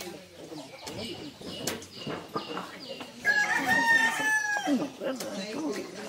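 A rooster crowing once, about three seconds in: a single long, held call lasting about a second and a half.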